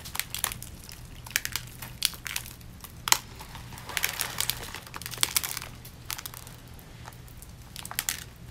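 Glued-on rhinestone layer being peeled off skin and crumpled in the hands: irregular crisp crinkling and clicking of the stones and their backing, with one sharp click about three seconds in.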